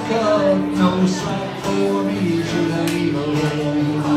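A man singing with an acoustic guitar, live solo performance.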